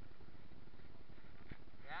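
Steady rumbling noise of a mountain bike rolling along a wet dirt trail, with a faint click about a second and a half in.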